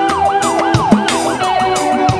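Live rock band playing with a fast wailing siren effect laid over guitar, keyboard and drums; the siren swoops up and down about three times a second.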